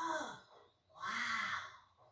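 A short voice-like call about a second in, heard from a television's speaker in a room.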